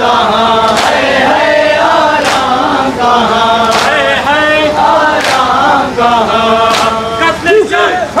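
Men's voices chanting a Shia noha in a steady melodic line, with chest-beating (matam) slaps landing together about every second and a half.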